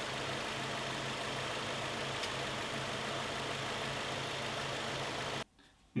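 Nissan Primera P12 engine idling steadily, heard from the open engine bay with the car in Park; the sound cuts off abruptly shortly before the end.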